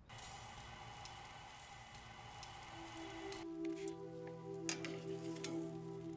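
Meat sizzling and crackling on a gas grill, starting suddenly. About three and a half seconds in, music with long held low notes comes in over the sizzle.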